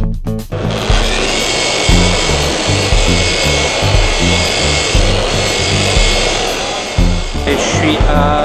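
Background music with a steady pulsing bass beat, over which an electric dual-action polisher runs steadily with a high whine as it buffs car paint, starting about half a second in.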